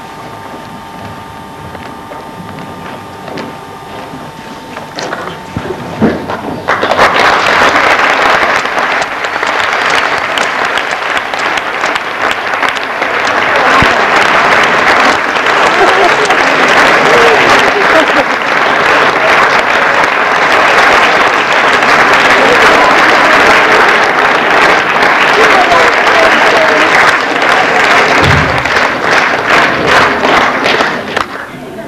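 Applause from a hall audience and the performers on stage, breaking out suddenly about seven seconds in and going on steadily to near the end, where it eases off.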